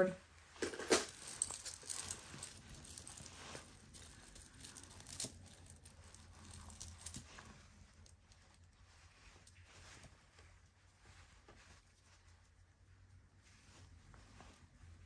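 Faint rustling and light clinks of thin metal jewelry chains being handled and untangled by hand, busiest in the first half and sparser after that.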